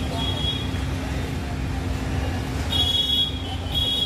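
Street traffic noise: a steady low rumble of vehicles, with a thin high-pitched tone that sounds briefly at the start and twice near the end.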